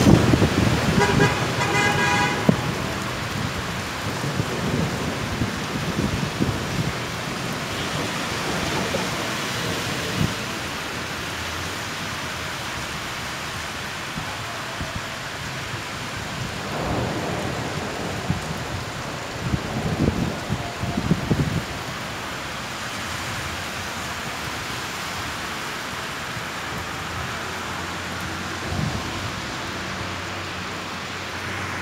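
Steady heavy rain with car tyres hissing through water on a wet street. A car horn sounds for about a second and a half early on, and vehicles pass by twice later.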